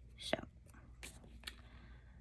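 Faint rustles and two light clicks of sticker paper being peeled and pressed onto a planner page.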